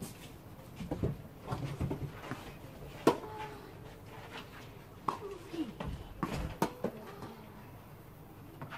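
A few sharp, short knocks spaced a second or two apart, the loudest about three seconds in, with faint voices in the background.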